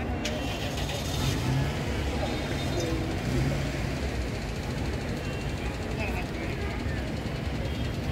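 Steady vehicle traffic noise with a low engine hum, mixed with indistinct voices of people talking.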